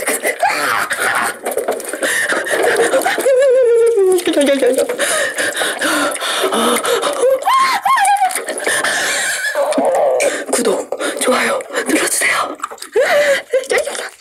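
A woman's voice squealing, whimpering and laughing nervously in high, swooping cries, without words, interrupted by frequent short clicks.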